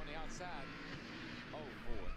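Onboard audio of a NASCAR stock car running at speed, a steady engine and road noise, with a voice speaking briefly over it.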